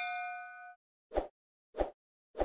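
A notification-bell chime sound effect rings and dies away over the first second, followed by two short pops about half a second apart.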